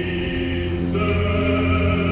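Theatre chorus singing a slow, sustained chord over the pit orchestra, moving to a new chord about a second in.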